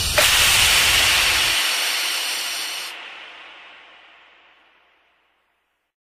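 The closing seconds of an electronic dance track: the bass beat drops out about a second and a half in, under a bright burst of hissing noise that enters just after the start. The noise loses its top end about three seconds in and fades away over the next two seconds.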